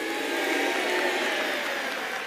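Studio audience laughing and applauding at a punchline. The sound swells to a peak about a second in, then slowly dies away.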